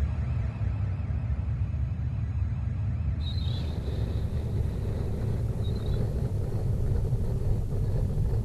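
Steady low rumble, with a faint high tone heard briefly about three seconds in and again near six seconds.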